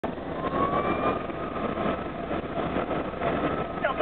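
Fire engine's siren in a slow wail, heard from inside the cab, its pitch rising slowly then easing down over the truck's engine and road noise.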